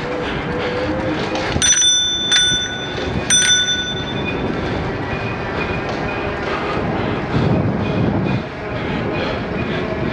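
Bicycle bell rung three times, a little under a second apart, each ding ringing on briefly and the last one longest. Under it runs a steady rush of riding noise.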